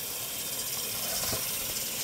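Bathroom sink faucet running in a steady stream, filling the stoppered basin.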